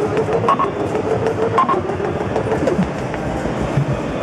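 Korg Monotribe analogue synthesizer playing a sequenced pattern: a synth line stepping between pitches, with one short pitch glide, over a steady run of noisy hi-hat ticks. Its knobs are being turned as it plays, and kick-drum thumps come in near the end.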